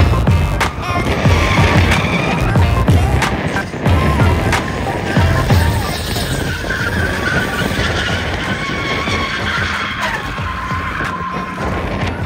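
Music with a steady beat laid over a BMW E46 drifting: its engine revving and its rear tyres squealing as it slides through a corner.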